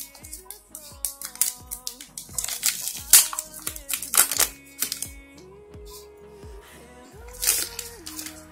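Plastic bag crinkling and rustling in the hands as a phone battery is worked out of it. The crackles are loudest in the middle and again near the end, over steady background music.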